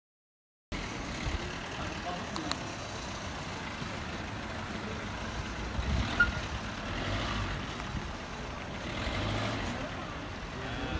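Street noise with a small van's engine running at low speed as it pulls slowly forward, and one short sharp sound about six seconds in.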